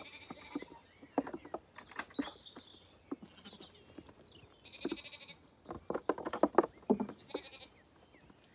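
Zwartbles lambs bleating: high, wavering calls near the start, about five seconds in and near the end, with lower calls between. Scattered short knocks and clatter run among the calls.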